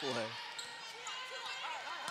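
An indoor volleyball rally on a hardwood court: the ball being hit, with short, faint squeaks from the court over gym background.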